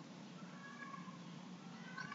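Faint hiss and low hum of room tone, with a faint wavering call, like an animal's, from about half a second in to past a second.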